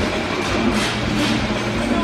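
Steady background hubbub of a large hall full of people: crowd murmur with no single event standing out.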